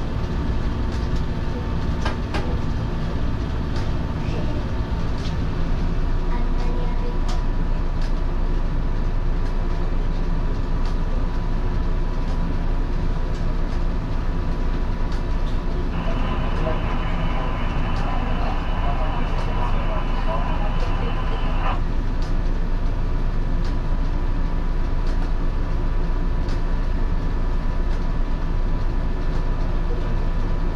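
Cab of an electric railcar standing at a station: a steady hum from its onboard equipment with a faint whine and a few clicks, and a burst of noise lasting about six seconds that starts and stops abruptly midway.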